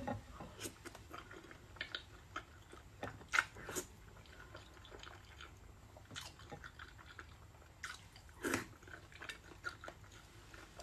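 Close-up mouth sounds of a person biting and chewing saucy, chili-coated meat: soft wet smacks and clicks, with louder bites about three and a half seconds in and again past eight seconds.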